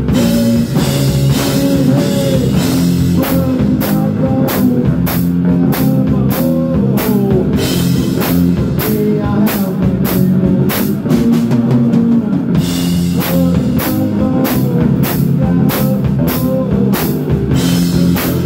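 Live rock band playing: a drum kit keeping a steady beat with cymbal and drum hits under amplified guitar.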